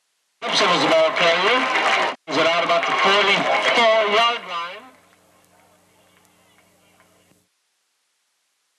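A man speaking close to the microphone for about four seconds, with a short break partway through; then only a faint steady hum until the sound cuts off abruptly near the end.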